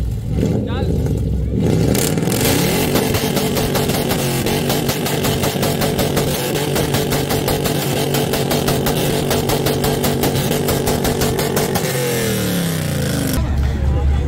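Modified Toyota Mark II's engine revved up and held at high revs, with its exhaust popping and crackling rapidly and continuously from a pops-and-crackles setting switched on for show. The revs fall away near the end.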